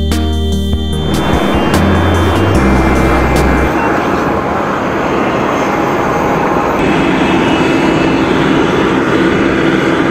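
Guitar music fades out about a second in, with its bass notes lingering for a few seconds. It gives way to the steady loud rush and hum of aircraft engines running on an airport apron.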